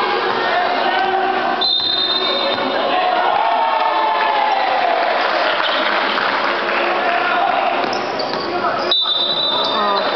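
Gym hubbub during a basketball game: players and spectators calling out, with a basketball bouncing on the wooden floor. A brief high steady tone sounds about two seconds in and again near the end.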